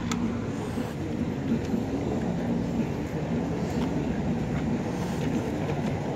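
Steady low rumble of traffic on a busy street, with faint voices underneath.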